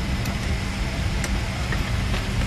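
Steady low rumble of airliner cabin noise, with a couple of faint clicks.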